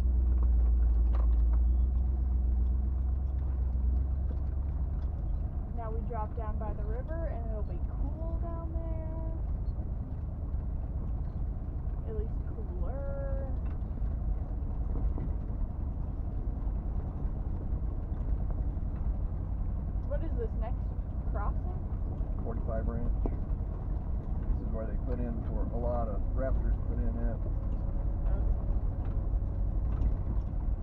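Low, steady rumble of a 1977 Jeep Cherokee driving slowly down a rough dirt track, heard from inside the cab. The rumble is heaviest for the first few seconds. Indistinct voices come and go over it.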